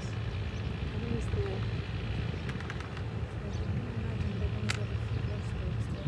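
Wind buffeting an outdoor microphone as a continuous low rumble, with a single sharp click about four and a half seconds in.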